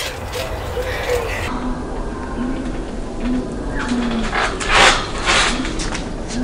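A trampoline being bounced on: the mat and springs swish and thump with each bounce, the bounces getting louder over the last second and a half as the jumper goes up into a backflip.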